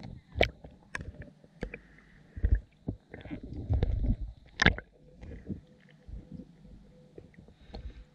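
Water moving around an underwater camera, muffled: low rumbling surges with irregular knocks and clicks, the loudest a sharp knock about halfway through.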